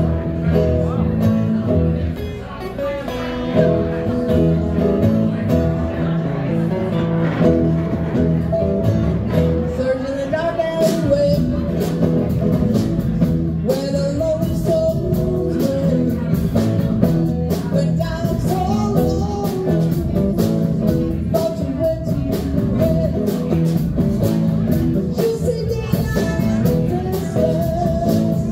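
A live band playing: electric guitar, ukulele, mandolin, upright bass and drums, with a woman singing lead.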